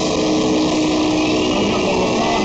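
Metal band playing live at full volume: heavily distorted electric guitars holding a sustained note over dense, continuous drumming.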